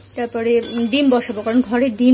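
A metal spatula clinking and scraping against a metal kadai as a thick, dry fish mixture is stirred, under a woman's talking voice.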